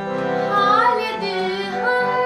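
A woman singing an ornamented, melismatic phrase in Raag Aiman (Yaman), her voice sliding up and down about half a second in, over steady held accompanying notes.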